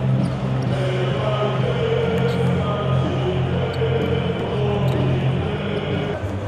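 Basketball arena during a warm-up: a large crowd chanting over steady loud music, with basketballs bouncing on the hardwood court now and then.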